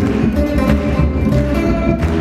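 Steel-string acoustic guitar music played live, a rhythmic strummed and picked part over steady bass notes.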